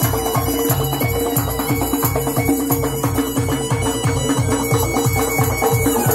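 Traditional folk dance music: a fast, steady beat on a hand-played frame drum (doira) under a held wind-instrument melody.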